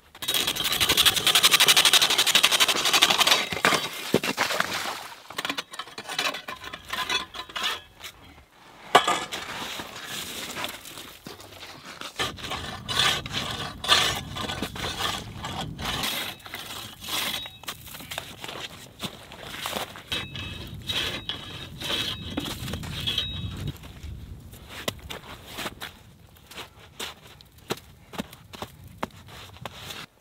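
Hands scraping and packing wet slush into the gaps between blocks of lake ice. There is a loud rough scraping for the first few seconds, then many short, irregular scrapes and crunches.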